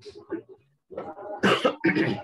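A person coughing: two hard coughs close together in the second half.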